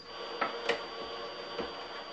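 Wooden screw-driven test jig clicking and creaking faintly a few times as its hand wheel is turned, pressing a small wooden box under about 450 pounds of load.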